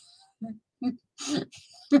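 A woman's held-back laughter: a few short chuckles and breaths, three brief bursts, before she starts speaking again near the end.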